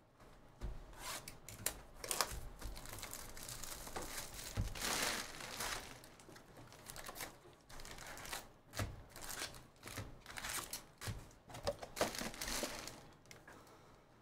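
Cardboard hobby box of 2023 Bowman Draft jumbo packs being opened, and its foil-wrapped card packs crinkling and rustling as they are pulled out and set down, with light knocks of packs and box on the table.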